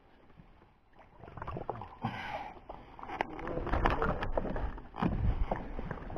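Scattered knocks, thumps and rubbing on a small wooden boat as a fish is landed and handled aboard, starting after about a second of near quiet.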